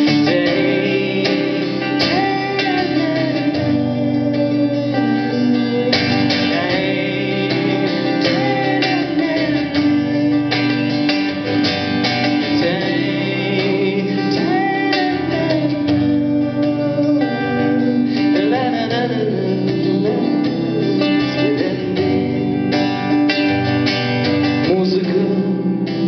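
Live acoustic guitar playing an instrumental break between verses of a song: steady strummed chords with a melody line moving above them.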